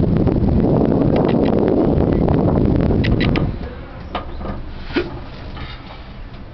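Wind rushing over the microphone in a moving cable-car cabin, loud at first. A little over halfway through it cuts out sharply to a much quieter cabin hum, just after a few light clicks. A single sharp knock comes about a second after the drop.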